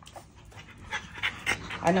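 French bulldog panting quickly in short, rapid breaths, starting about a second in.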